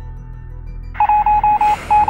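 Rapid runs of short electronic beeps, all at one pitch and starting about a second in, with a brief gap between runs, over a soft hiss: a text-typing sound effect for a caption appearing letter by letter.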